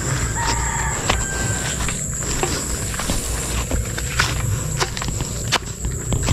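Footsteps and rustling of someone walking through grass and brush, with irregular soft clicks and knocks, over a steady low rumble and a thin, steady high-pitched whine.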